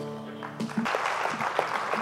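The last chord of a fiddle and acoustic guitars rings out and fades. About half a second in, audience applause breaks out.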